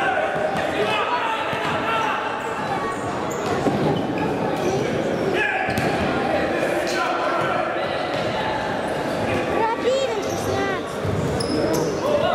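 Futsal game sound on a wooden indoor court: players' shouts and calls overlapping, the ball being kicked with sharp knocks several times, and a quick run of shoe squeaks on the floor about ten seconds in.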